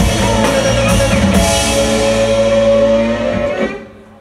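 Live rock band with electric guitar and drum kit playing the last bars of a song. The final chord cuts off sharply about three and a half seconds in and rings out briefly.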